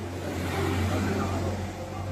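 A motor vehicle on the street, with a steady low engine hum. Its sound swells about half a second in and eases off again after about a second.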